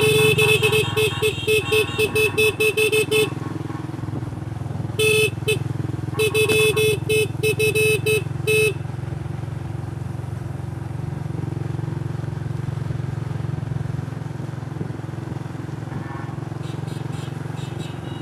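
A small motorcycle engine running steadily on the move, with a motorcycle horn beeped in rapid short toots, about four a second. The toots come in a long string over the first three seconds, in a short pair around five seconds, and in another string from about six to eight and a half seconds. After that the engine runs on alone.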